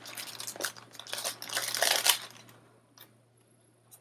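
Crinkly rustling of paper and thin translucent sticker-book sheets being handled, in two spells in the first half, louder in the second. It fades to a couple of faint taps near the end.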